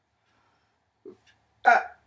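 A woman's two short, wordless vocal outbursts: a faint one about a second in, then a loud, sharp one a little later that dies away quickly.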